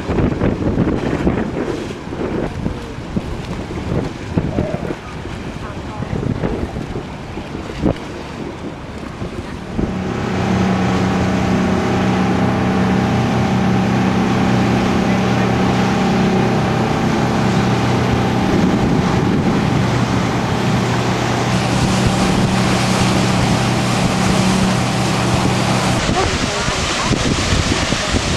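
Wind buffeting the microphone for about the first ten seconds. Then the cruise boat's engine comes in as a steady drone, a low hum with a higher tone above it, under a rush of wind and water.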